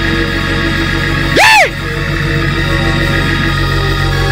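Organ holding sustained chords under a prayer, with one short shouted vocal exclamation about a second and a half in that rises and then falls in pitch.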